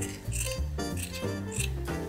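Scissors snipping through fleece-lined stocking fabric, under background music.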